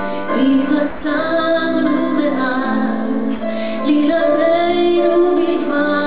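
A woman singing a slow song in Hebrew into a microphone, holding long notes, with live band accompaniment.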